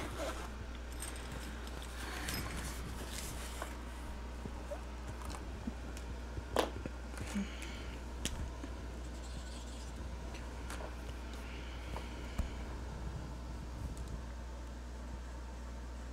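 Plastic alcohol-marker barrels clicking and clinking together as a set of Ohuhu markers is handled out of its carrying case, with scattered sharp clicks, the loudest about six and a half seconds in.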